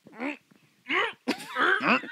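Men's voices in three short bursts of exclamation and laughter, the last and longest starting a little past halfway.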